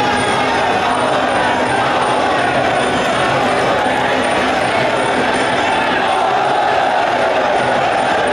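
Sarama, the traditional Muay Thai fight music: a pi java oboe playing a wavering, sliding melody over drums, with small cymbals ticking in a steady beat, under crowd noise.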